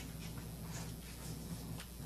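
Faint rustling and handling of paper at a lectern microphone, with a couple of small clicks, over a steady low room hum.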